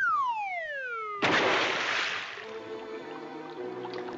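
Cartoon sound effect of a falling whistle, one tone gliding down for about a second, then a loud splash as a body drops into a swimming pool. Soft orchestral music comes in after the splash.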